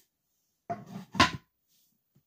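A wooden plaque blank being handled and set down on a wooden tabletop: a brief scuff, then a louder knock of wood on wood about half a second later.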